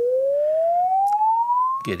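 Sine-wave measurement sweep played through a Quad ESL63 electrostatic speaker panel: a single pure tone gliding steadily upward in pitch, then cutting off suddenly near the end.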